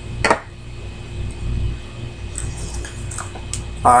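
Room tone: a steady low hum with a faint constant whine, broken by one short burst of noise just after the start and a few faint clicks later on.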